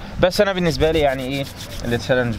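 A man's voice speaking in a drawn-out phrase, with a pause near the end before he starts again.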